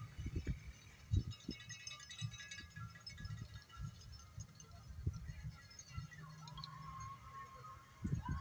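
Wind buffeting the microphone in irregular low rumbles, with faint, thin high tones in the distance during the first few seconds.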